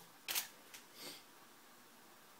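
Camera shutter firing for a test shot of a falling water drop: a short sharp click about a third of a second in, then a softer one about a second in.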